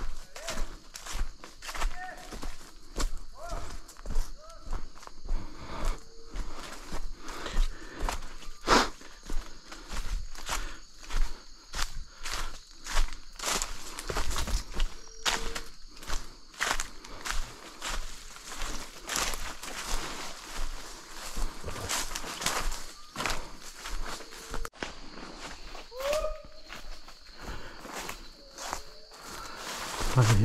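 Footsteps crunching through dry leaf litter and brushing past undergrowth, walking at an irregular pace through dense forest brush. A steady faint high-pitched hum sits behind.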